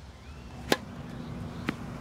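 A tennis serve: a sharp crack of a racket hitting the ball, then a softer knock about a second later as the ball bounces.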